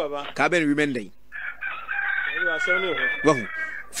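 A rooster crowing once, a single long call starting about a second in and lasting some two and a half seconds, with a voice talking underneath.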